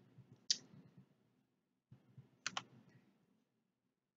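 Faint computer mouse clicks: one click about half a second in, then a quick double click about two seconds later.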